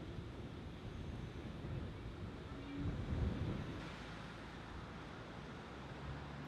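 Quiet outdoor street ambience: a low steady rumble of wind on the microphone and distant traffic, swelling slightly about halfway through.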